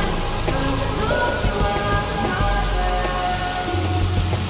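Steady rain, a constant hiss, mixed with slow music of long held notes over a deep bass.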